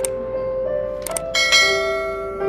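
Electronic keyboard playing held notes in a piano voice. It is overlaid with a subscribe-button animation's sound effects: mouse clicks at the start and about a second in, then a bright bell ding about a second and a half in.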